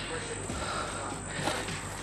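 Ryobi One+ 18V power caulk gun's motor running on its slow setting as it pushes caulk out of the tube, a faint steady high whine over a low hum.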